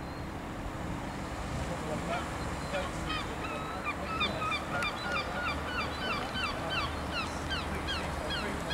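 Austin A40 Farina's engine running low as the car rolls slowly closer, with a rapid series of short, high-pitched calls repeating several times a second over it from about two seconds in.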